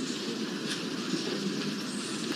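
Steady low background noise of a crowded room, even and without distinct events.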